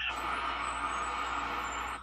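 Steady hiss of road traffic, heard through a television speaker.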